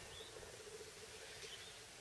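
Near silence: faint outdoor background with a low steady hum and two brief, faint high chirps, one near the start and one later on.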